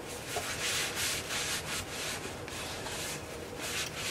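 Steel shovel blade scrubbed by hand with a cloth pad, a hissing rub in quick back-and-forth strokes, a few a second, as rust and dirt are wiped off.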